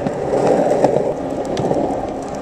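Skateboard wheels rolling over street pavement, a steady rolling noise with a few light clicks.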